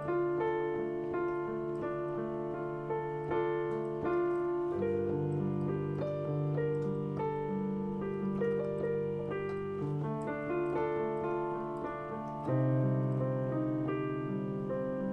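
Electronic keyboard with a piano sound playing a slow minor-chord passage: held bass notes under a moving right-hand figure, with the bass changing about five seconds in and again near the end. It is played to show the sound of minor chords, which the player calls strange and sad.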